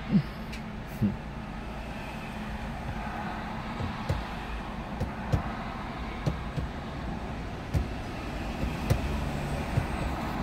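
Steady low rumble of motor vehicles, with a few short soft knocks. A low steady hum grows a little louder near the end.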